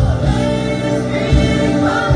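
A woman singing a gospel song into a microphone over instrumental accompaniment, holding and bending long notes.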